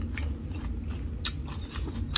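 Mouth sounds of someone eating: a few soft clicks and smacks, the clearest a little past the middle, over a low steady rumble.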